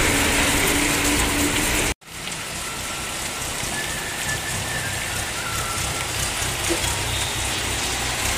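Heavy rain falling on a flooded street, a steady hiss. In the first two seconds a vehicle engine hums under the rain. The sound drops out sharply for an instant about two seconds in, then the rain hiss continues with a low rumble beneath it.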